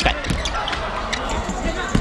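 Basketball knocking on the rim and bouncing on the hardwood court over steady gymnasium crowd noise, with a few sharp knocks near the start and a louder one near the end, as a free throw that came up short is rebounded.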